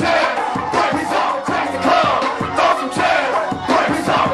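Live hip hop performance: rappers shouting into microphones over a loud beat, with a crowd of voices yelling along.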